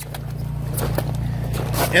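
Steady low motor hum that grows louder, with a few light clicks over it.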